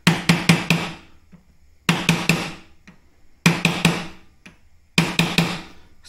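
A small steel pry bar knocking on a wooden block held over a heated silver coin on a pine board, straightening the bent coin. There are four quick volleys of about four knocks each, roughly a second and a half apart. The knocks sound loud because the ordinary kitchen table and the loose things lying on it rattle and ring along.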